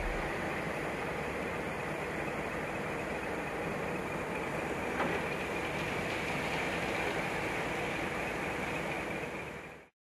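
Steady running noise of a concrete mixer truck at a batching plant, even and unchanging, with a single small click about halfway through; it fades out and stops just before the end.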